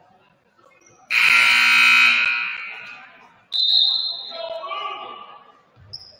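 Gymnasium scoreboard buzzer sounding about a second in, held for about a second and fading away in the hall's echo, followed about two and a half seconds later by a second, shorter high-pitched blast.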